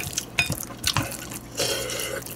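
A wooden spoon stirring sauce-coated rice in a glass bowl: wet squelching, with a few light clicks of the spoon against the glass.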